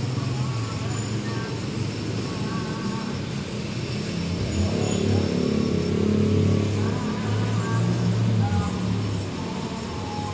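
Outdoor traffic background: a steady low rumble of motor vehicles, growing louder from about four to nine seconds in as a vehicle passes close by.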